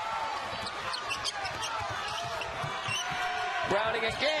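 Basketball being dribbled on a hardwood court, with repeated short knocks of the ball, among sneakers squeaking and arena crowd noise.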